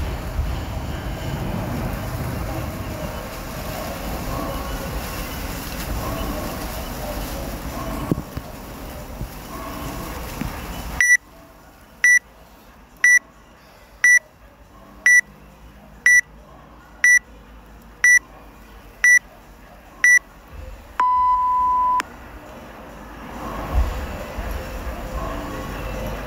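Workout timer countdown from the WODProof app: ten short high beeps one a second, then one longer, lower beep that marks the start of the workout. Before the countdown there is a steady wash of outdoor background noise.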